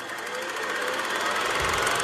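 Title-card sound effect: a rattling whoosh that swells steadily over about a second and a half, ending in a low thump near the end.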